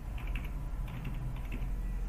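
Computer keyboard being typed on: a run of short, irregular key clicks as digits are entered, over a steady low hum.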